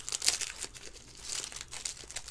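Foil trading-card pack wrapper crinkling and tearing as it is peeled open by hand, in irregular crackles, the sharpest a little after the start.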